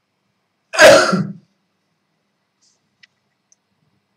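A man coughs once, loudly and sharply, about a second in.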